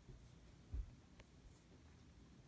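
Near silence: quiet room tone with one brief, soft low thump a little before halfway and a faint click shortly after.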